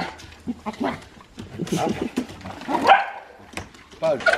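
Pet dog whining and yipping in excitement at greeting its owner, in short broken calls, the loudest a quick rising yelp about three seconds in.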